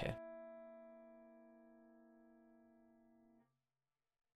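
A C13 chord on piano (C in the bass, B-flat, E and A above) ringing out and fading, then damped suddenly about three and a half seconds in as the keys are let go.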